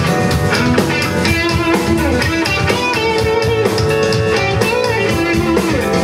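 Live band playing: electric guitar, bass guitar, keyboard and drum kit, with a held melody line that bends in pitch over a steady drum beat.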